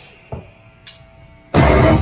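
Live heavy band stopping dead for a short quiet break, with only a faint steady amplifier tone and a couple of small knocks, then the whole band crashing back in together about one and a half seconds in.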